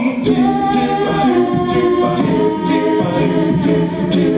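A mixed-voice a cappella group singing sustained backing chords through microphones, shifting through a few chord changes. Short percussive hits, likely vocal percussion, keep a beat about twice a second.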